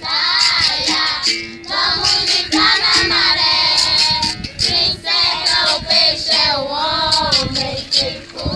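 A group of girls singing a capoeira song together, accompanied by the twanging notes and rhythmic strikes of a berimbau.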